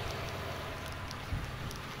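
Faint steady outdoor background hiss with light wind on the microphone, and one soft low bump about a second and a half in.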